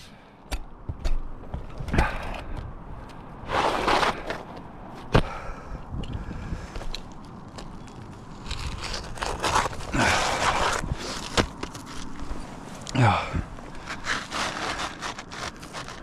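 Asphalt shingles being shifted on the roof and cut with a utility knife: rough scraping and rubbing strokes, the longest lasting a couple of seconds around the middle, with a few sharp clicks in the first third.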